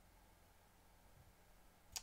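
Near silence: faint room tone, with a short click right at the end.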